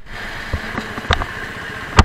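Motorcycle running at low speed on the road, heard from a handlebar-mounted camera, as a steady engine and road noise. A few short knocks come about half a second to a second in, and a sharp click at the very end is the loudest sound.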